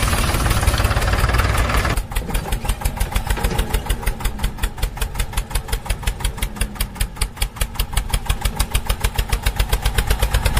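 Small tractor engine running with a steady, rapid thumping beat. For the first two seconds a rushing hiss lies over it and then cuts off suddenly.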